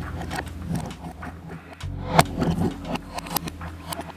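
Light clicks and taps of a small screwdriver working a screw on metal construction-kit plates, with one sharper metal click about two seconds in, over a low steady drone.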